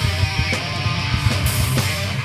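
Live heavy metal band playing: distorted electric guitars over drums, loud and dense.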